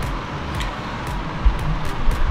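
Motorcycle being ridden along a gravel dirt trail: steady wind and road rumble on the camera's microphone, with a few sharp knocks from stones.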